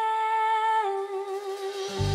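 A woman's voice holding a long unaccompanied sung note. About a second in it steps down a little and carries on with a gentle vibrato. A low instrumental accompaniment comes in at the very end.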